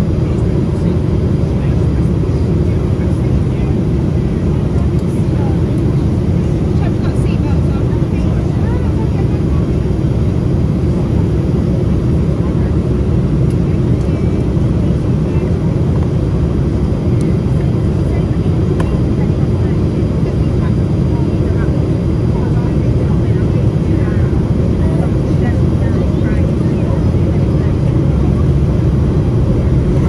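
Steady low roar inside the cabin of a Boeing 787-8 in flight: airflow over the fuselage and the hum of its two GEnx-1B turbofan engines, even and unchanging.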